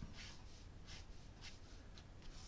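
Fine-tip ink pen scratching faintly across paper in a series of short strokes as lines are drawn.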